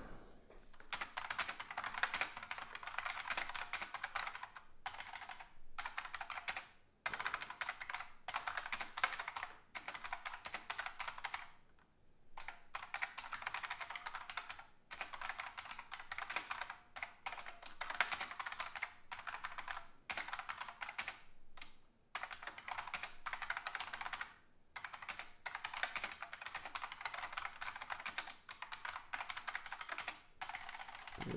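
Computer keyboard typing in quick runs of keystrokes, broken by a few short pauses.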